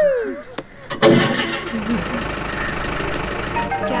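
A vehicle engine starting about a second in, then running steadily with a low rumble.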